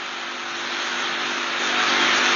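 A steady rushing noise with a faint low hum under it, swelling louder toward the end.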